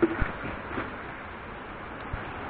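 Handling knocks and rustle of a person clambering down a steep rock and leaf-litter gully: two sharp knocks right at the start and a softer one under a second in, over a steady hiss.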